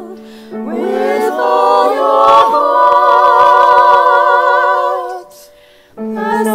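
Small mixed choir of women's and men's voices singing a cappella, with each singer recorded separately and mixed together. The voices come in about half a second in, rise into a long held chord, and break off for a short pause near the end.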